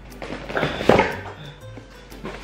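Cardboard box full of papers being handled and set down on a wooden table, with rustling and one thump about a second in. Soft background music plays underneath.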